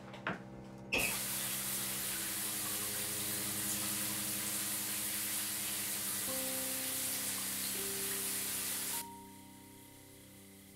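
Shower turned on: water spraying steadily from about a second in, cutting off abruptly near the end, over soft sustained music.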